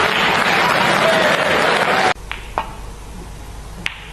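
Snooker crowd applauding a lucky pot, cut off abruptly about halfway through. Then comes a quieter hall with a couple of faint clicks, and near the end a single sharp click of a cue tip striking the cue ball.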